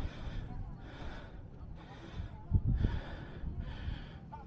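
Hard, rhythmic breathing close to the microphone, about one breath every 0.7 s, from someone walking a trail. Wind rumbles low on the microphone, with one louder low buffet about two and a half seconds in.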